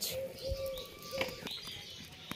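A dove cooing with short low notes, and a few light knocks of cookware being handled.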